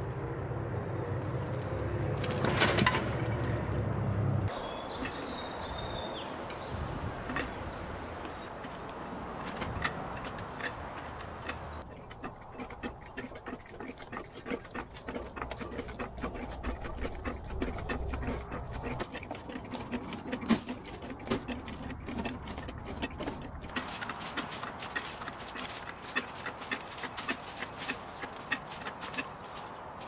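A steady engine hum and mechanical clicking while a tipped-over mini tractor is dragged upright and out of the mud. The hum runs for the first few seconds and again through the middle, and many sharp clicks and knocks come in the second half. The piece is cut together from several short takes.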